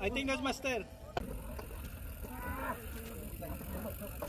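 People shouting and calling out: one loud, drawn-out call in the first second, then quieter calls, over a steady low rumble.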